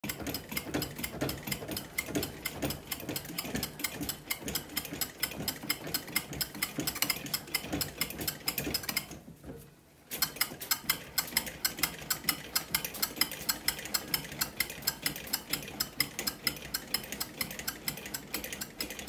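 Hand-operated bat rolling machine working a composite baseball bat through its rollers, giving a rapid, even clicking several times a second. The clicking stops for about a second near the middle, then resumes.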